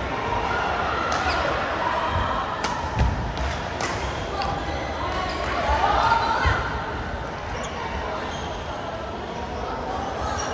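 Badminton rally: sharp racket hits on a shuttlecock, a cluster about three to four seconds in and a harder one at about six and a half seconds, over the chatter of other players in a large sports hall.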